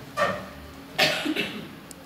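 A person coughing twice: a short cough just after the start and a second one about a second in.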